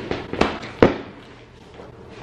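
Three sharp smacks in under a second, the third the loudest: playful hits landing on a person.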